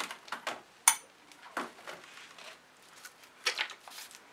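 Paint bottles and small cups being handled on a worktable: a few scattered knocks and clicks, the sharpest a brief ringing clink about a second in.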